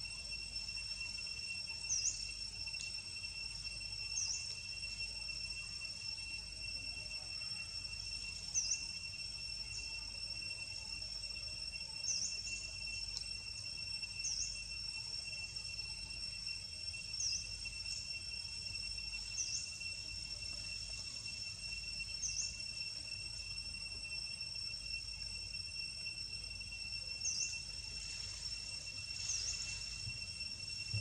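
Steady, high-pitched insect trill from the forest, unbroken throughout, with about ten short high chirps scattered every two or three seconds.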